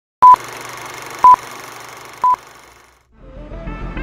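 Three short phone-style beeps about a second apart, part of a phone-call intro sound effect, over a steady hiss that fades away. Music with a beat starts about three seconds in.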